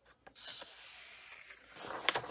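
Paper pages of a coloring book handled and turned by hand: a soft rubbing rustle of the page under the hand, then a louder swish of the page turning over near the end.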